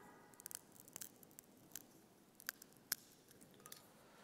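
Near silence broken by a scattering of faint, sharp clicks and light taps, the loudest about three seconds in: small objects being handled on the altar.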